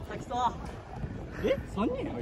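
Wind rumbling on the microphone, with players' voices shouting: one wavering call about half a second in, then two short rising shouts near the end.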